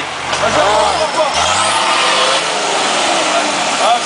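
An off-road 4x4's engine revving under load as it is driven through deep mud, the revs climbing twice in the first second and a half. This is followed by a loud, steady rush of noise from the spinning wheels and churned mud.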